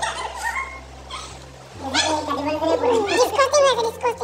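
Several people's voices talking. The voices grow louder and higher-pitched, excited, from about halfway through.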